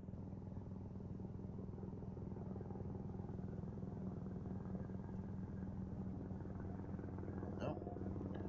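Low, steady engine rumble of a slow-flying aircraft passing overhead, which the listener judges by its rumble to be military.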